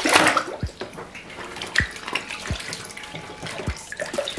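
Water splashing and sloshing in a plastic tub as a steel armour piece is rinsed and scrubbed by hand, loudest in a splash right at the start.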